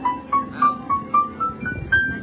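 Bowman CX350 digital piano playing a single-note melody, about four notes a second, climbing step by step higher in pitch.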